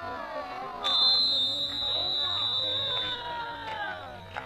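Long, drawn-out shouts from players and spectators celebrating a goal, with a referee's whistle blown in one long blast of about two seconds starting about a second in.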